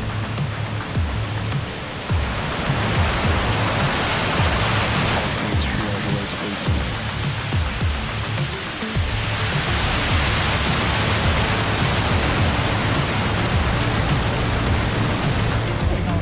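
SpaceX Starship SN10's Raptor rocket engines during liftoff and climb, a loud steady rushing roar that swells about three seconds in and again near ten seconds. Background music plays underneath.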